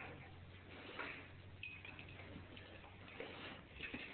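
Faint scattered ticks over a low steady hum in a quiet room.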